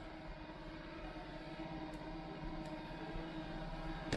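DEENKEE D30 robot vacuum running steadily while it cleans a hardwood floor on its low suction setting: an even motor hum with a faint whine.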